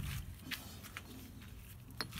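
Low, steady background with a couple of faint, light clicks, about half a second and about a second in, from parts being handled on a workbench.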